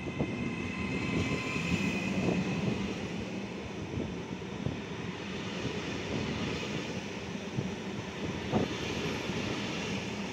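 Trenitalia Rock double-deck electric train rolling slowly past along the platform: a steady rumble of wheels on rail, with a high electric whine over the first few seconds and a few sharp knocks from the running gear.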